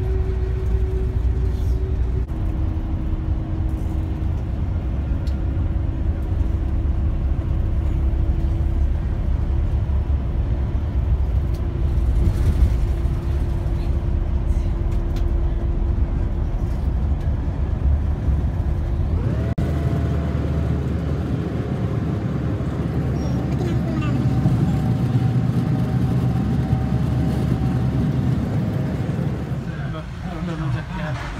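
Airport limousine bus heard from inside the passenger cabin: steady engine and road rumble with a constant engine tone. About two-thirds of the way in, the tone changes suddenly to a higher one.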